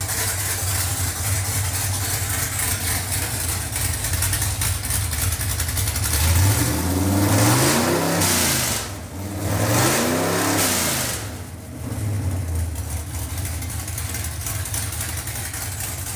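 Carbureted 347 cubic inch small-block Ford V8 with a hydraulic roller cam running on an engine dyno. It idles steadily, is revved up and back down twice a little past the middle, then settles back to idle.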